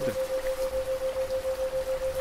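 Steady rain with a single sustained tone near 528 Hz that pulses about seven times a second: a 7 Hz isochronic tone meant to induce relaxation.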